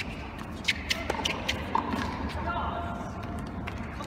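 Tennis rally in play: a quick run of sharp hits, racket on ball and ball on court, about a second in, with short squeaks and echo from the indoor arena.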